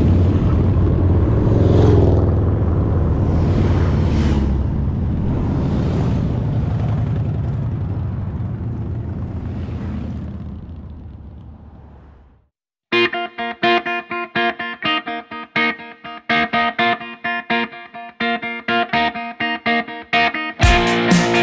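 Motorcycles on a street passing the camera one after another, the engine rumble swelling with each pass and fading away about twelve seconds in. After a moment's silence, guitar music with steadily picked notes starts.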